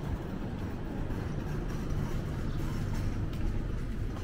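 Steady low rumble of urban background noise.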